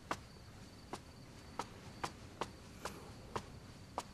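Light footsteps on a hard tiled floor, about two steps a second, with a faint steady high-pitched tone like a cricket underneath.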